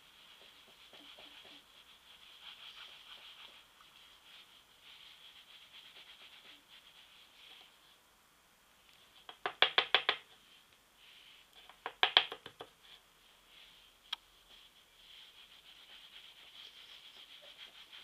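Soft brushing of a large makeup brush over the skin, with two short bursts of rapid clicking and clattering about ten and twelve seconds in as makeup items are handled, then one sharp click.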